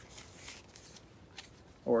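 Pages of a hardcover picture book being turned by hand: a soft paper rustle in the first second, then a faint tick or two.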